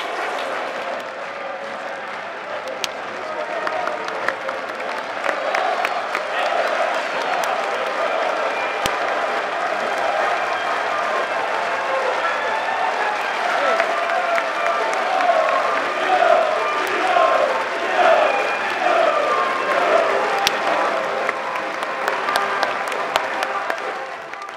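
Football stadium crowd applauding steadily. From about a quarter of the way in, many voices calling out rise over the clapping in repeated sweeps, and they are loudest near the end.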